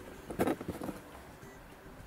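Faint background music with steady held tones. About half a second in, a short burst of clicks and scraping from a small screwdriver working a screw terminal on a circuit board.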